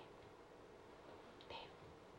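Near silence: faint room tone, with a brief soft hiss, like a whisper, about one and a half seconds in.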